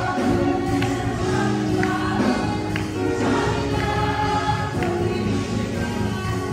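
Gospel worship song: several voices singing together over instrumental backing, with a sharp percussive tap about once a second.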